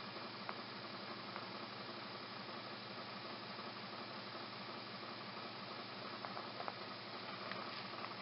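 Steady low hiss of background room noise with a faint hum, broken by a few light ticks.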